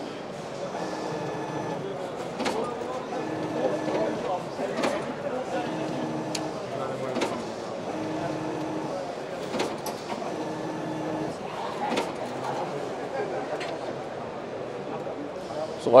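Automatic stuffer-clipper stuffing meat into netted collagen casing. About five runs of a steady hum, each about a second long, alternate with sharp clicks as portions are clipped off, repeating about every two and a half seconds. Background voices run under it.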